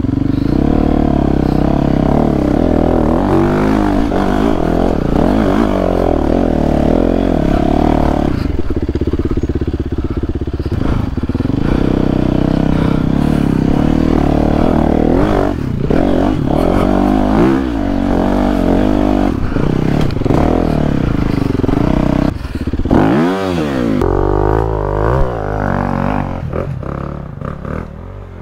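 Four-stroke single-cylinder Yamaha WR enduro motorcycle engine revving up and down over and over as it is ridden along a rough dirt trail. The revs hold steadier for a few seconds about a third of the way in and drop briefly a few seconds before the end.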